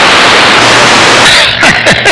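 CB radio receiver on channel 28 giving loud, steady static hiss while tuned to long-distance skip stations. About one and a half seconds in, a strong station keys up, the hiss breaks up and a garbled, pitch-sliding transmission begins.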